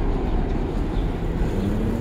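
Steady low rumble of city street traffic, with no distinct single event.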